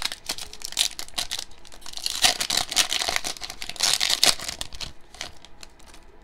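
Foil wrapper of a basketball trading-card pack being torn open and crinkled by hand: a dense crackle with louder bursts about two and four seconds in, thinning out near the end.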